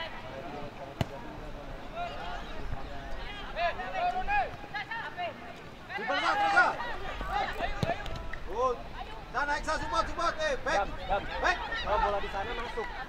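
Youth football players and spectators shouting across an open pitch. A single sharp thump of a ball being kicked comes about a second in, and a weaker thump near the eighth second; the shouting gets busier about halfway through as play opens up.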